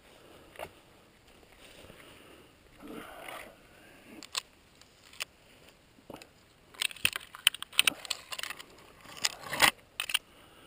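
Footsteps crunching through dry fallen leaves and twigs, then, from about seven seconds in, a dense flurry of sharp crackling as the leaf litter and twigs are disturbed while a downed bird is picked up off the ground.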